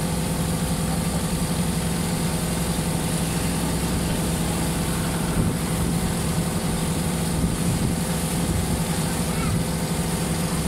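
A water bus's engine running with a steady, even drone while the boat is under way, heard from on board.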